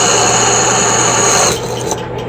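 Drill press running with a 3/16 bit cutting through the aluminium side cover of an e-bike hub motor, a steady motor hum under a high whining, hissing cut. The cutting cuts off about a second and a half in as the bit breaks through or is lifted, and the drill press motor keeps humming.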